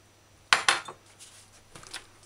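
Two quick, sharp clinks of metal kitchenware about half a second in, followed by a few faint light knocks.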